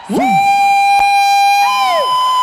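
Two long high-pitched held notes. The first swoops up at the start and holds steady; a second, slightly higher one comes in near the end, overlapping the first.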